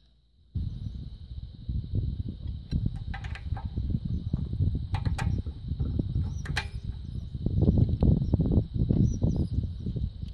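Wind buffeting the microphone, a loud, uneven low rumble that starts suddenly about half a second in. Over it come a few light metallic clicks from hydraulic quick-coupler fittings being handled, and a steady high insect trill.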